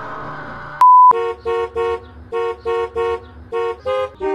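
The tail of a noisy crash dies away. Then comes a short, very loud steady beep, followed by a car horn tooting a quick tune of short notes, about three a second, at changing pitches.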